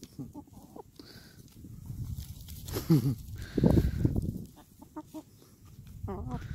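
Hens clucking while they peck at dug soil, with two louder calls about halfway through.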